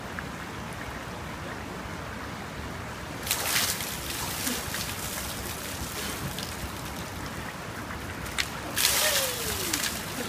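A bucket of water tipped over a man's head, a short loud splash about three seconds in, over the steady flow of a river. Near the end a second loud splash, typical of someone plunging into the river, with a short falling cry.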